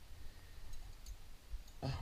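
Quiet handling rumble from a climber moving on the rock, with a few light clicks; near the end the climber lets out a strained voiced exclamation.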